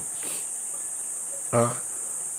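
A steady high-pitched hiss or shrill drone runs unbroken in the background, with a man's brief "uh" about one and a half seconds in.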